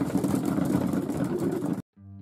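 A flock of racing pigeons feeding on the loft floor, a steady low murmur of the crowded birds that cuts off suddenly near the end.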